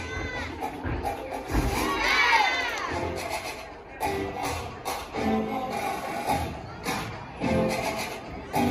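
Floor-routine music playing, with spectators shouting and cheering loudly about two seconds in.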